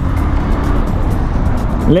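A motorcycle riding in city traffic, heard from the rider's seat: a steady rush of engine, road and wind noise on the microphone.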